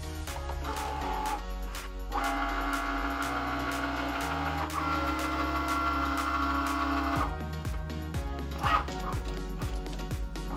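Cricut Maker cutting machine's motors whining as it draws in the cutting mat and moves its tool carriage. The steady whine starts about two seconds in, steps to a different pitch about halfway, and stops about seven seconds in. Background music plays throughout.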